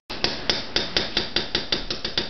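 Rapid, persistent knocking on a door, about five even knocks a second, starting suddenly.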